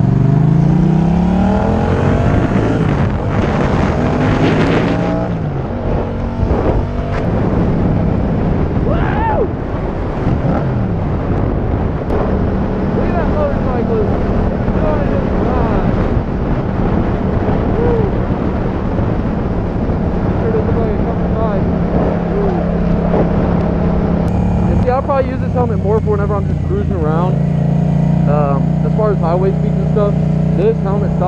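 Yamaha FZ-07's 689 cc parallel-twin engine pulling away, its pitch climbing through the gears over the first few seconds, then running steadily at cruising speed with wind noise on the helmet microphone.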